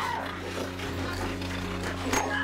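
Film fight-scene sound: a blow landing together with a short falling cry right at the start, then a low steady drone.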